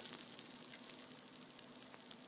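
Faint steady hiss with a low hum and a few soft clicks; no speech or music.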